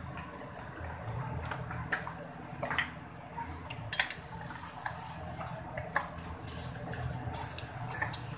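Wooden spatula stirring and scraping thick bubbling masala in an aluminium karahi, with a few sharp clicks of the spatula against the pan, the sharpest about four seconds in.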